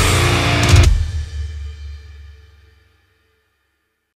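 End of a melodic death metal song: distorted guitars, bass and drums on a final held chord with cymbal hits, cut off about a second in. A low ringing lingers and fades out over the next two seconds.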